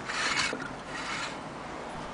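Fingers and hand rubbing against a frosted, etched glass lamp shade as it is handled: a short scraping rub in the first half-second and a weaker one about a second in.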